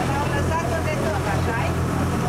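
Steady low drone of a boat's engine while under way, with people's voices over it.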